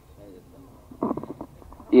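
A short pause between speakers: low background murmur, a brief, quieter voice sound about a second in, then a woman starts speaking into the microphone at the very end.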